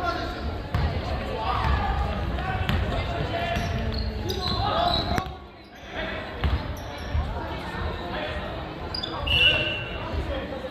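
A handball bouncing on the wooden floor of a large sports hall, amid players' shouts and calls. The sound dips briefly about halfway through.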